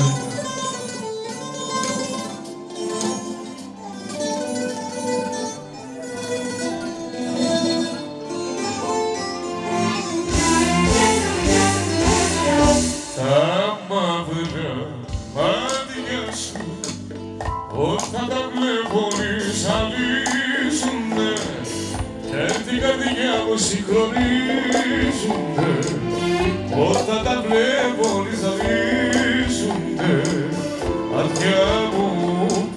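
Band music. A plucked-string melody plays at first, then a steady beat with bass drum comes in about ten seconds in, and a voice sings over it.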